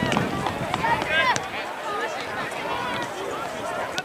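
Several voices shouting and calling out across an outdoor youth soccer field during play, the loudest calls about a second in, with a few sharp knocks among them.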